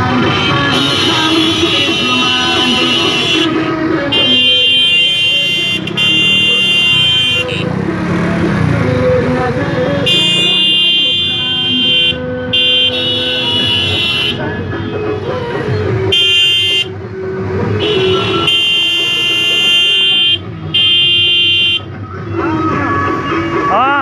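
Car horns sounding in long, repeated blasts of one to three seconds each, with short gaps between them, over the running noise of the vehicle convoy.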